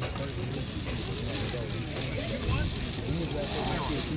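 Indistinct chatter of voices at a baseball field, no words clear, over a steady low rumble.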